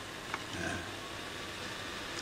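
Steady low background hiss in a pause between speech, with a light click and a faint short spoken syllable about half a second in.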